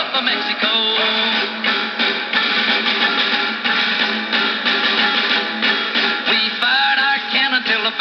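A 1937 Emerson AL149 tube radio playing a guitar-led country song through its small speaker, with a thin sound that has no deep bass and no high treble. The singing comes back in near the end.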